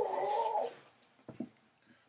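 A pet dog giving one short, high, wavering whine, followed by two faint taps about a second later.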